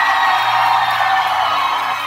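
A concert crowd cheering and whooping, with the band's music holding a steady low tone underneath.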